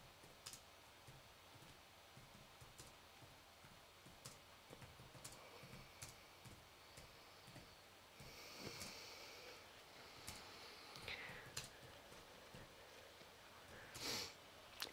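Near silence: room tone with a few faint, scattered small clicks.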